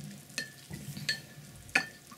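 A paintbrush being rinsed and stirred in a glass water jar. It clinks against the glass three times, each clink with a short ring.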